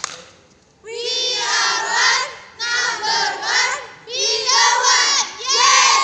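A group of young women's voices chanting a cheer loudly in unison, in four phrases starting about a second in.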